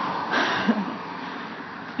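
A short breathy exhale from a person climbing a steep hill on foot, about half a second in, followed by steady outdoor background noise.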